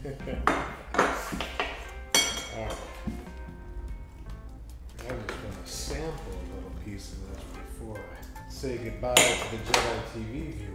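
Metal knife and fork clinking and scraping against a metal tray while a smoked turkey is carved, with a sharp ringing clink about two seconds in and louder clinks near the end. Background music plays underneath.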